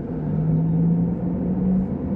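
Porsche Taycan's synthetic electric drive sound, a low UFO-like hum that rises slowly in pitch as the car pulls away, heard inside the cabin over low road rumble.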